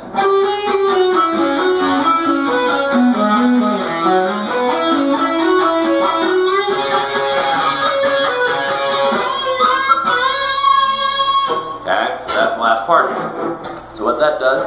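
Electric guitar playing a fast solo run with pull-offs, descending through the C-sharp Dorian scale in groups of four with an added tritone, its pitch falling and then climbing back. A single note is held for about a second and a half near the end.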